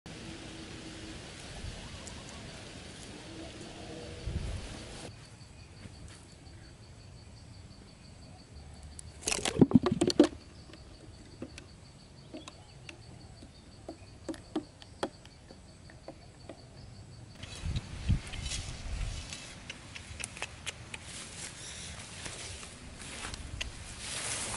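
Outdoor sounds from several spliced scenes. About ten seconds in there is a loud, brief cluster of knocks and scuffling, and near the end rustling steps through grass.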